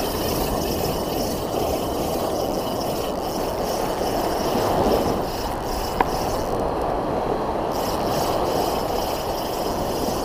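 Ocean surf washing up a sandy beach: a steady rushing wash of small breaking waves, with one sharp click about six seconds in.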